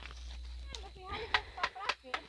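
Footsteps of several people walking on a sandy dirt track, with a few sharp steps in the second half and faint talk underneath.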